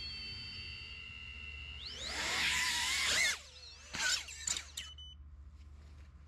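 Diatone Taycan MX-C 349 cinewhoop's brushless motors. A steady high whine is heard at idle, then about two seconds in the motors spool up into a loud whine with gliding pitch as the quad lifts off; it cuts off after about a second and a half. Three short throttle blips with pitch glides follow, then the sound falls away.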